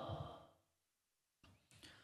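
The end of a sung line by an unaccompanied male voice fading out, then near silence, with a faint breath drawn in about a second and a half in.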